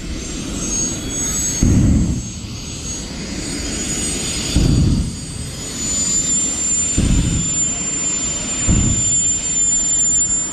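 A Mini's engine held at high revs while it spins its tyres in a smoking burnout at the start line, heard from across the field. A high whine wavers, then holds one steady pitch about six seconds in. Gusts of wind buffet the microphone four times.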